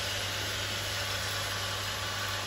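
Steady low electric hum under an even hiss: the pump of a greenhouse rainwater watering and misting system running.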